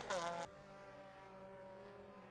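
Mazda MX-5 race car's four-cylinder engine heard faintly at a steady pitch, after a louder falling note in the first half-second.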